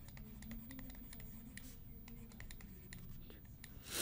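Faint, irregular clicks and taps of a stylus on a drawing tablet as words are handwritten, with one louder thump at the very end.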